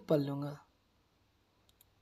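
A few words of speech at the start, then a quiet room with two faint, short clicks near the end.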